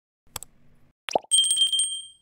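Subscribe-button animation sound effects: a sharp mouse click, then a quick falling plop, then a small notification bell ringing with a fast shimmer that fades out at the end.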